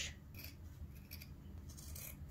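Steel fabric scissors cutting through velvet along a seam in several short, faint snips.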